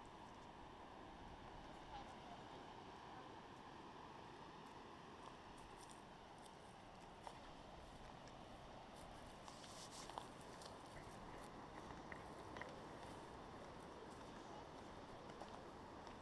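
Faint footsteps on a dirt hiking trail, a scattered few crunches mostly in the second half, over a steady low hiss.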